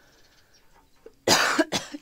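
A person coughing: one loud, sudden cough a little past a second in, followed by a shorter, weaker second cough.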